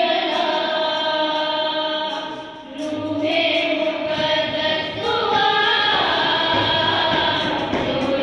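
A small group of women singing a Punjabi-language Christian worship hymn together, in long held notes. There is a short break between phrases about two and a half seconds in.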